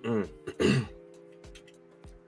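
A man clears his throat twice in quick succession, two short rough bursts in the first second, over quiet background music.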